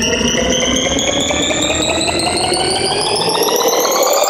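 Electronic music mixed from a DJ controller: a synth rising steadily in pitch, a build-up riser, while the bass and beat fall away about three and a half seconds in.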